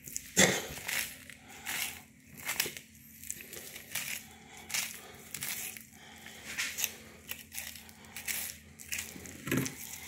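Knife slicing a large blue catfish fillet away from the spine: a run of irregular short crackling cuts and tears as the blade works through flesh and membrane.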